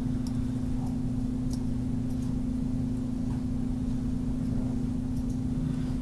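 A steady low electrical hum with one fixed tone, with a few faint, sharp clicks scattered through it, as a photo file is clicked and dragged onto the desktop with the mouse.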